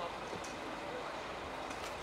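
Steady outdoor background noise with faint distant voices and a few light knocks.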